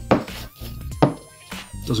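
A block of softwood knocks as it is handled and set down on a cutting mat, with the sharpest knock about a second in. Faint background music plays underneath.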